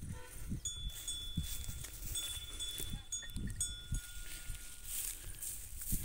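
Faint outdoor ambience: low wind rumble on the microphone, with thin, steady high-pitched tones coming and going.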